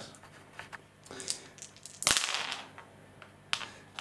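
A handful of dice thrown onto a gaming mat, with a sudden clatter about halfway through that dies away within a second as they roll and settle. A short click follows near the end.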